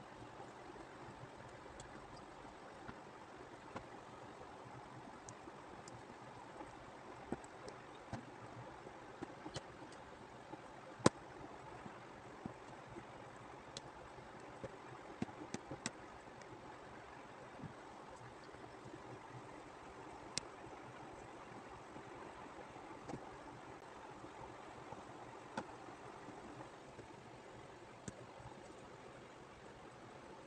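Aari hook needle piercing the fabric and drawing thread through as a leaf is filled with chain stitch: irregular sharp ticks over a faint steady hiss, with one much louder click about eleven seconds in.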